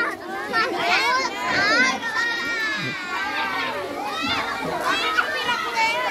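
A crowd of children talking over one another, many high young voices overlapping in a continuous babble.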